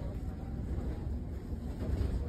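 Low, steady rumble of a bus running, heard from inside the passenger cabin.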